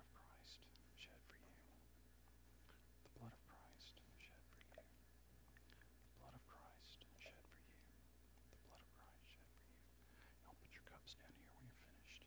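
Near silence: faint whispered voices over a low steady hum of room tone.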